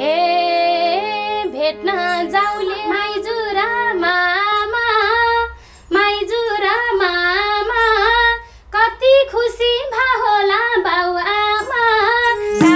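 A woman singing a Nepali dohori folk verse solo in a wavering, richly ornamented melody. She breaks briefly for breath twice, around the middle. A held low instrumental note under her voice dies away about four seconds in.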